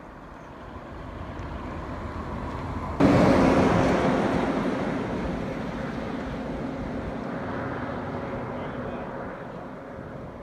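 A motor vehicle passing at speed: its tyre and engine noise builds, jumps suddenly to a peak about three seconds in as it goes by, then fades away slowly.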